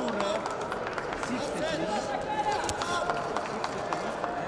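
Men's voices calling out, with scattered short slaps and footfalls from two wrestlers hand-fighting on the mat.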